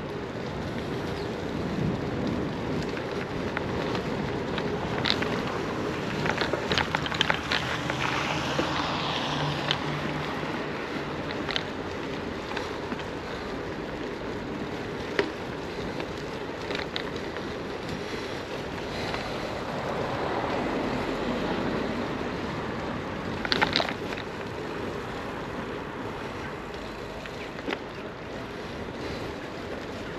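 Steady rushing noise from riding a bicycle on a wet street: wind on the microphone and tyre hiss, with scattered clicks and rattles.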